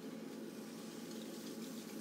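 Wet clay turning on an electric potter's wheel under the potter's hands and sponge as she opens up the clay: a low, steady wet swishing over a faint motor hum.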